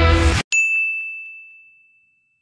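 Rock outro music cuts off abruptly, then a single bright ding rings out and fades away over about a second and a half: a logo chime.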